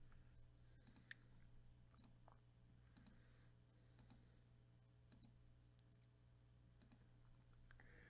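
Faint computer mouse clicks, about one a second, as a web page's button is clicked over and over, over a low steady hum.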